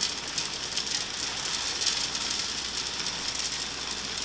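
Beeswax pellets pouring into a metal pouring pitcher: a dense, continuous rattle of many small clicks.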